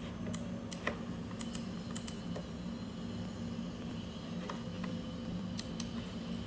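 Computer mouse and keyboard clicks: a scatter of sharp clicks in the first two seconds, a pause, then a few more near the end, over a steady low hum.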